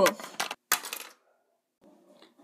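A shouted cry trails off and drops in pitch, followed by a few short clicks and one sharper noisy burst at about two-thirds of a second in, and then quiet.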